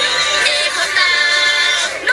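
A song: a singing voice over backing music, holding one long note through most of the second half that slides down near the end.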